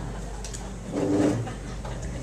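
A single short, low vocal sound from a person about a second in, over a steady room hum.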